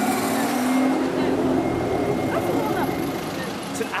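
Aston Martin Vantage's engine running as the car pulls away in city traffic: a low steady note that climbs slightly over the first second or so, then fades. Street voices and traffic noise continue around it, with a brief sharp knock near the end.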